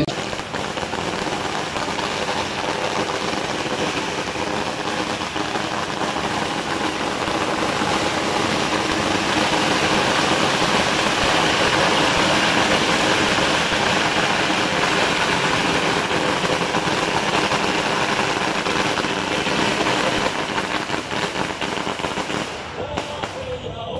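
A long string of firecrackers going off in one continuous, rapid crackle, stopping near the end.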